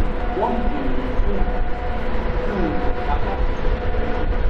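Freight train hauled by a JR Freight EF510 electric locomotive, approaching at low speed: a steady low rumble with a faint steady whine above it.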